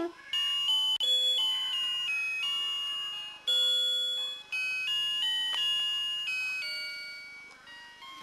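Electronic tune from a children's musical sound book's button panel: a simple beeping melody of held notes stepping up and down, dying away near the end.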